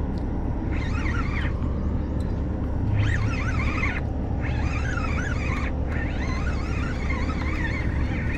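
Steady low machinery hum from a ship anchored nearby, with birds singing in short warbling bursts over it.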